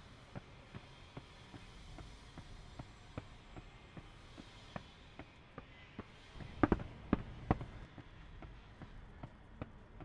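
Footsteps on pavement, about two or three a second, over low city street noise, with a few louder, sharper steps about seven seconds in.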